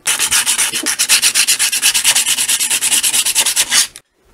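Sandpaper rubbed rapidly back and forth over the hard plastic neck of a Breyer model horse, about ten strokes a second. It is smoothing the rough surface left by a Dremel.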